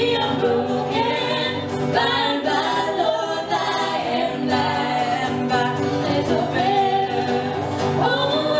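Live band playing a song: a woman singing lead with a second woman's voice in harmony, over strummed acoustic guitar, electric bass and electric guitar.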